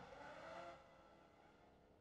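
Near silence: a faint, distant engine sound that fades out about a second in.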